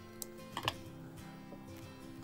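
Small scissors snipping embroidery floss, two short sharp clicks about half a second apart, over soft steady background music.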